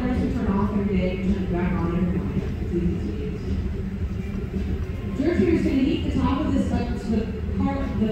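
Steady low rumble of a natural-gas-fired glory hole (glassblower's reheating furnace) while a glass piece is reheated inside it. Indistinct voices are heard over it.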